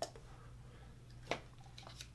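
Faint handling of a plastic shaker bottle and its lid, with one sharp click a little past halfway and a few lighter ticks near the end.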